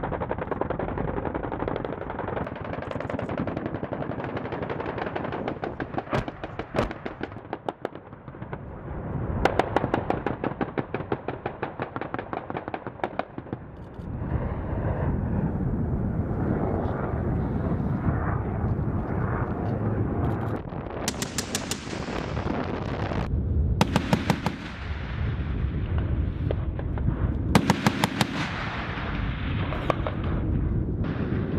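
Repeated bursts of rapid automatic gunfire over the steady noise of an AH-1Z Viper attack helicopter. A long run of fire comes about ten seconds in, and shorter, sharper bursts follow in the second half.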